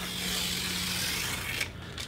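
Paper facing being peeled off a foam-board doubler: a steady, papery tearing rasp lasting about a second and a half, which stops abruptly.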